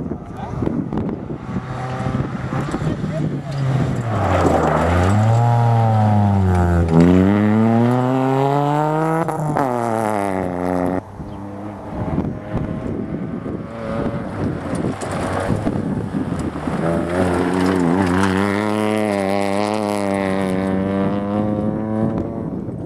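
Peugeot 107 rally car engines revving hard on a gravel stage: the pitch falls and climbs again through corners and gear changes, drops suddenly near the middle and cuts off about eleven seconds in, then a second car is heard accelerating, its pitch rising steadily near the end.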